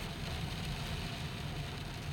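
Steady low engine rumble heard from inside a vehicle's cabin.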